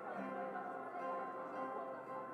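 Soft, slow instrumental music from a live worship band, with long held chords and gentle plucked notes.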